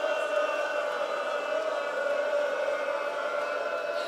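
A congregation of mourners chanting together on long held notes, many voices blending into a steady, drawn-out drone in a Muharram noha.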